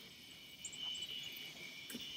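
Faint, steady high-pitched trilling of insects, with a few light rustles.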